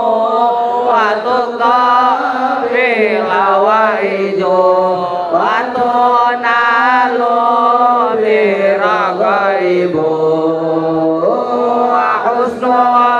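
A solo man's voice chanting through a microphone and PA, long sustained notes with wavering, winding ornaments. The melody sinks to a low held note about ten seconds in, then leaps back up near the end.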